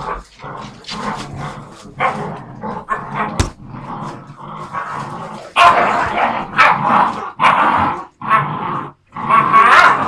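Several young puppies growling and yipping in rough play, mouthing at a person's hand; the calls come in short bursts and grow louder from about halfway through.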